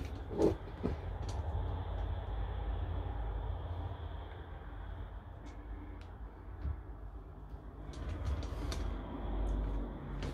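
Steady low rumble and faint hiss from a handheld camera moving around inside a small shower cubicle, with a couple of light knocks in the first second, from the folding plastic shower doors.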